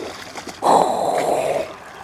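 A hooked speckled trout splashing and thrashing at the water's surface, a watery burst lasting about a second that begins about half a second in.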